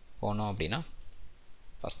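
A single sharp computer mouse click near the end.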